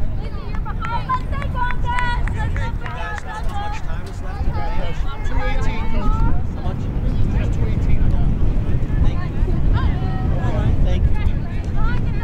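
Indistinct voices of lacrosse players calling out on the field, short calls scattered throughout, over a steady low rumble.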